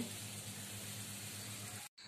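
Water spraying from a garden hose spray nozzle onto soil and plant leaves: a steady hiss that cuts off abruptly just before the end.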